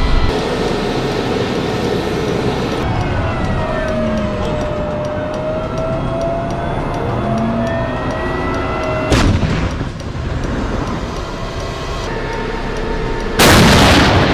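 M1A2 Abrams tank running, with steady engine and track noise. A sharp shot comes about nine seconds in, and near the end a much louder blast as the tank fires its 120 mm main gun.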